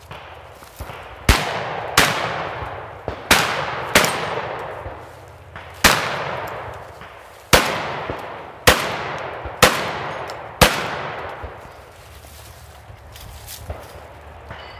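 A shotgun fired about nine times at an irregular pace, roughly a second apart, from about a second in to near eleven seconds. Each shot is followed by a long fading echo through the woods. Fainter sharp clicks and knocks fall between some of the shots.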